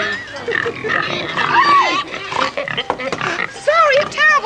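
A person's high-pitched voice squealing, with a run of short, quick up-and-down squeals near the end.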